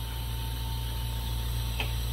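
Steady hiss of a lit lampworking torch flame over a constant low hum, with one faint click near the end.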